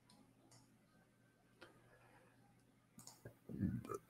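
Near silence broken by a few faint clicks from working a computer, one about one and a half seconds in and a small cluster around three seconds. A short low murmur of voice starts near the end.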